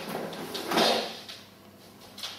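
A short scraping rustle about a second in, as a small suitcase and an umbrella are handled on a wooden floor.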